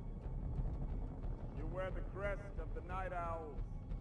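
A low, steady rumble from a TV episode's soundtrack, with a voice speaking briefly about halfway through.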